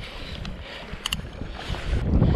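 Open-water noise around a kayak, with water moving and wind buffeting the microphone, and two sharp clicks about halfway through.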